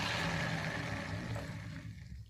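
A fidget spinner's ball bearing whirring as it spins freely after a flick, slowing down and dying away near the end.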